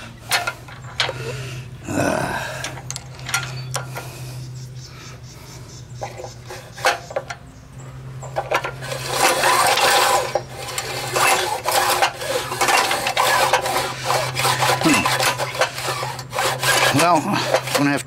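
Small Tecumseh engine of a Craftsman Eager 1 edger being cranked over by its recoil starter with the spark plug out and grounded for a spark test. There are scattered clicks and handling at first, then from about nine seconds in a dense run of rapid clicking and rasping as the engine turns over.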